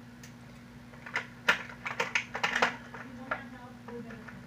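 A quick run of sharp clicks and taps from small plastic art supplies being handled: about a dozen packed into a second and a half, then one more click.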